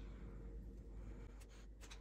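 Faint scratching of a Sharpie marker writing figures on a paper tracker card.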